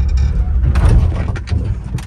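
Pickup truck's engine lugging as the clutch is popped, with a jolt about a second in, then dying down: the engine stalls because the clutch was let out too fast without enough gas.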